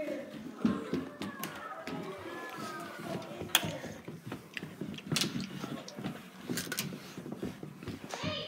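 Scattered knocks and clicks of a handheld phone being carried on the move, with footsteps and faint children's voices in the background.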